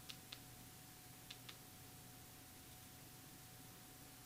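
Near silence with faint clicks of a small wireless Bluetooth remote's buttons being pressed, two quick presses near the start and two more about a second later, over a faint steady hum.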